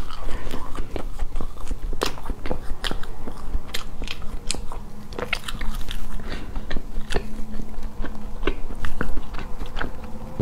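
Close-miked mouth sounds of biting into and chewing a large slab of soft chocolate sponge cake, with many short, irregular clicks and smacks.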